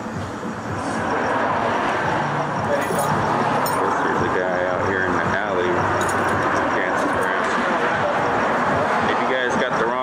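Indistinct voices over a steady, loud background noise with a low hum, which rises in the first second and then holds.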